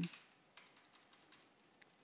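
Faint computer keyboard keystrokes: a few separate key clicks, spaced irregularly, as characters are deleted with backspace.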